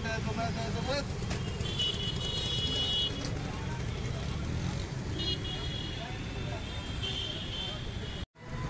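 Busy street ambience: a steady traffic rumble and people's voices, with a high vehicle horn sounding three times, the first for more than a second.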